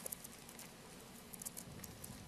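Faint, scattered rustling and flicking of paper pages as a congregation turns through their Bibles to look up a verse, over a low room hum.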